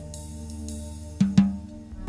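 Jazz recording: quiet held chords, then two sharp, ringing drum strokes a little over a second in.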